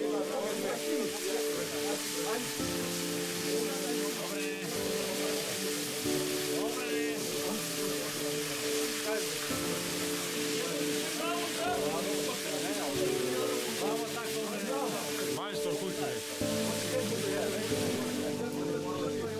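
Bacon sizzling and frying in a pan, a steady hiss heard under background music.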